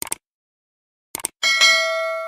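Sound effect of a subscribe-button animation: two quick mouse clicks, two more just after a second in, then a bright bell ding that rings on and fades out.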